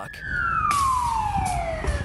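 Emergency vehicle siren wailing: its pitch peaks at the start, then falls in one long, slow sweep. About two-thirds of a second in, a loud rushing hiss joins it over a low rumble.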